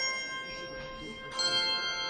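A bell struck about a second and a half in, each stroke ringing on with many overtones. The ring of a stroke just before is still fading when the new one sounds.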